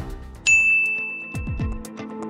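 A single bright electronic ding, one high tone that sets in suddenly about half a second in and rings for over a second, followed by music with deep falling bass thumps.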